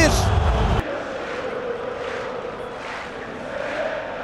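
Stadium crowd of football fans cheering loudly after a goal. The sound cuts off abruptly under a second in, leaving a steadier, quieter crowd din.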